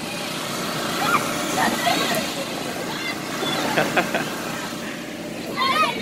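Children shouting and calling out in short high-pitched bursts while playing in an inflatable bounce course, over a steady hum from the inflatable's air blower.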